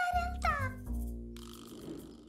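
Cartoon scare effect and music: a held wavering tone breaks off, a low rumble comes in, and about half a second in a short high squeal slides steeply down in pitch, then it all fades away.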